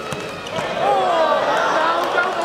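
A thud of a football being kicked at the start, then from about half a second in a loud, drawn-out shout from players, a reaction to the goalkeeper's save.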